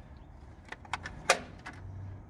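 A few light clicks and taps of metal, the loudest just over a second in, as a hand handles a flip-style stainless steel placard holder on a truck body.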